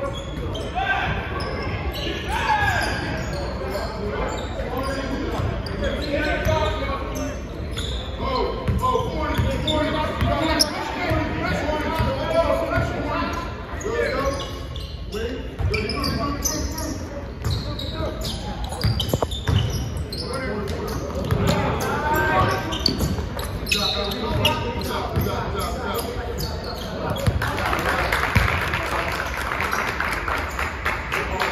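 A basketball bouncing on a hardwood gym floor during a game, with indistinct shouts and voices echoing in the hall. Near the end comes a burst of louder crowd noise.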